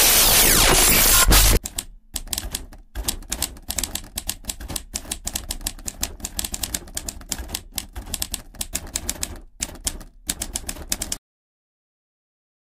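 Typewriter sound effect: rapid, irregular key clicks as on-screen text types itself out, cutting off about a second before the end. It is preceded by a loud burst of glitch static noise that stops suddenly about a second and a half in.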